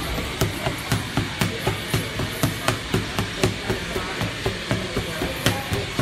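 Boxing gloves striking focus mitts in a steady punching rhythm, a sharp smack about twice a second with some quicker doubles.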